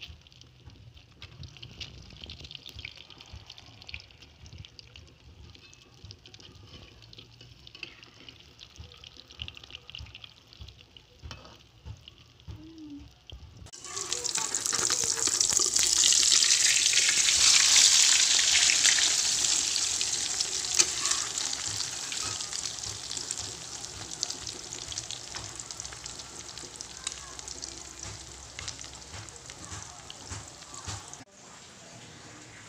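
Egg and potato omelette frying in hot oil in a wok, crackling and sizzling. About halfway the sizzle suddenly grows much louder, then slowly dies down.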